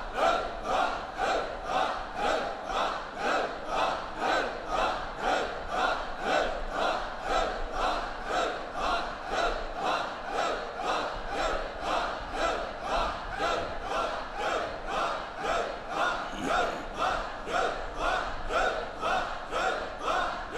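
Group of men chanting in unison in Sikh kirtan simran, with an even, fast pulse of about two beats a second, over harmonium and tabla.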